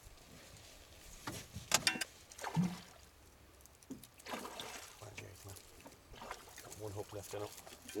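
Knocks and handling noises against the wooden hull of a rowboat, with a short rush of noise in the middle and muffled men's voices, while a pike is being netted.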